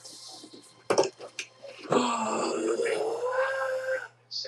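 A sustained, pitched voice-like call lasting about two seconds, starting about halfway in, preceded by a few sharp clicks about a second in.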